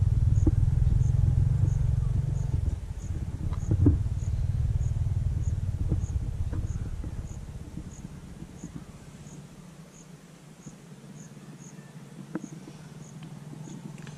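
An insect chirping steadily, a short high chirp about every two-thirds of a second, over a low rumble that fades away after about seven seconds.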